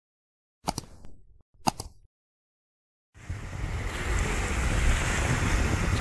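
Two short sound-effect hits about a second apart, each dying away quickly. About three seconds in, steady wind buffeting the microphone takes over, with a strong low rumble.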